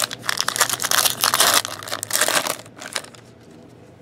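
Crinkling and crackling of a foil trading-card pack wrapper being torn open and handled, stopping about three seconds in.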